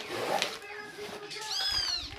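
A short, high-pitched animal cry near the end that rises and then falls in pitch, heard over the rustle of bubble wrap being handled.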